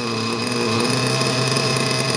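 LRP nitro RC engine idling steadily on a brand-new carburettor during its first run, the idle shifting slightly lower about a second in as the engine settles. A heat gun blowing on the cylinder head adds a steady rushing hiss.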